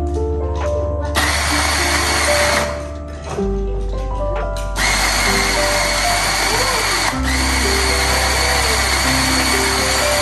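Electric coffee grinder grinding beans: a short burst of about a second and a half, then a longer run of about six seconds that stops suddenly near the end.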